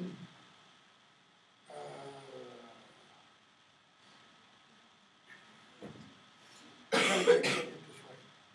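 A person coughs twice in quick succession near the end, after a quiet stretch of room tone broken only by a brief low murmur about two seconds in.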